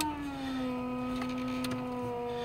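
A vehicle backing out of a driveway: a steady whine that slowly falls in pitch.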